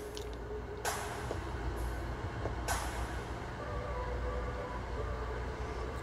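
A low steady background hum with two soft clicks of handling, about one second and nearly three seconds in.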